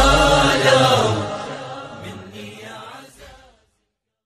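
The end of a sung Iraqi Arabic lament: the voice and its accompaniment fade away and stop dead about three and a half seconds in.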